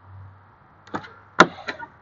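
A Peterbilt 389's cab door being opened: a few clicks and one sharp knock about halfway through.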